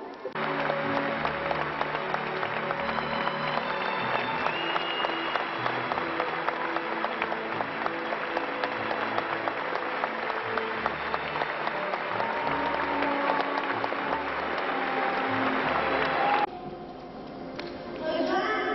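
Audience applauding over music with held notes and a bass line. The applause and music cut off abruptly near the end.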